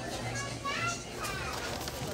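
Indistinct background chatter, other people's voices talking over a low steady hum.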